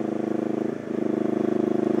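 Twin-carburetor motorcycle engine running steadily while riding, with a brief dip in its sound a little under a second in before it picks up again at the same pitch.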